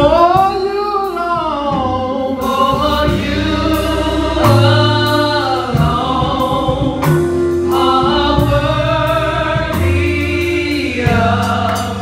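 A small group of women singing a gospel song together into microphones, their voices gliding up and down in held phrases over a musical accompaniment with low bass notes.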